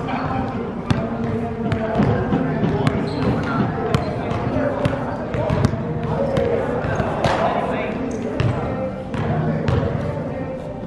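Basketball bouncing on a hardwood-style gym floor during play, irregular sharp thuds, with background voices echoing in the large hall.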